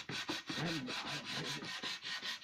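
A wooden board being hand-sanded with a small sanding block in quick, rhythmic back-and-forth strokes.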